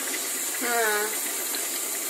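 Kitchen tap running steadily into a stainless steel sink. A short burst of a person's voice comes about a second in.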